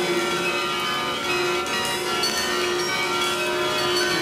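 Free-improvised ensemble music: a bowed viola holding a note against a dense layer of many sustained, overlapping tones.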